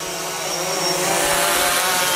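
DJI Phantom 3 Standard quadcopter hovering close by: the steady buzzing whine of its four motors and propellers, growing a little louder in the first second.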